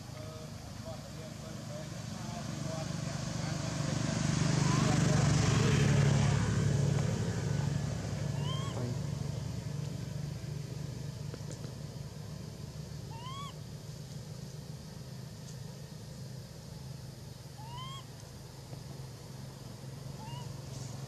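A motor vehicle's engine hum passes by, growing to its loudest about five seconds in and then easing off to a lower steady drone. Over it, a short rising call is repeated four times, about every five seconds, in the second half.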